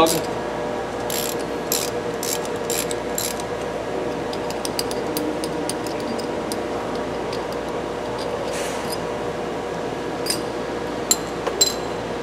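Ratchet wrench with an 11/16 socket clicking through several short strokes as it loosens the oil level port plug on a spring-applied wet brake, with a few scattered light clicks near the end. A steady hum runs underneath.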